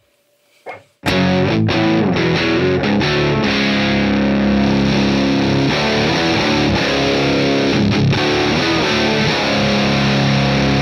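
Electric guitar played through the Matthews Effects Architect V3's boost section alone into a Tone King Sky King combo amp, starting about a second in with loud, overdriven chords that ring out and change every second or so. The boost's clipping adds grit and gain to the amp's clean tone.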